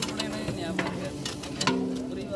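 A long wooden paddle stirring thick, wet beef masala in a large aluminium cooking pot, with repeated scraping and squelching strokes.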